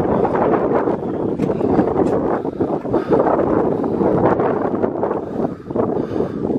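Wind buffeting the camera's microphone: a loud, uneven rushing noise that rises and falls.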